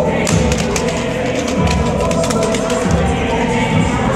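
Background music with a steady beat, with a quick run of knocks and clicks in the first half.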